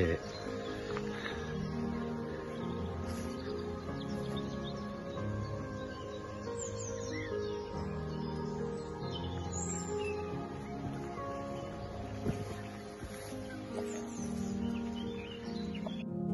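Soft background music of sustained chords, with birds chirping faintly over it a few times.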